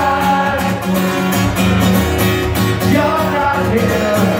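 Acoustic guitar strummed steadily under a male voice singing a melody, a live solo acoustic song through the venue's PA.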